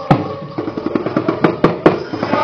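Drums beating a fast, steady rhythm, with a few louder, sharper strokes in the second half.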